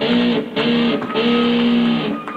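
Electric guitar played live: three notes on the same pitch, each sliding in slightly, two short ones and then one held for nearly a second.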